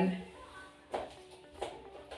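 Two light knocks as fried fish pieces are pushed into a clear plastic food container, over faint background music.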